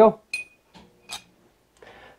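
Cut steel pieces being handled: light metal clinks about a third of a second in and again about a second in, the first with a brief high ring.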